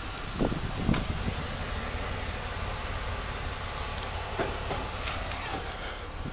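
Steady outdoor background noise, an even hiss over a low rumble, with a couple of faint taps in the first second.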